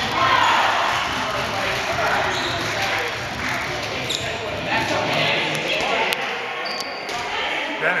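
Dodgeball game on a hardwood gym floor: balls bouncing and smacking off the floor and players, over continuous shouting and yelling from many players, all echoing around the gym.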